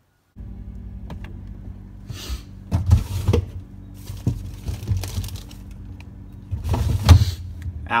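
Rummaging through an open refrigerator: irregular clunks, knocks and rustles of items being moved about, loudest about three seconds in and again near seven seconds, over a steady low hum.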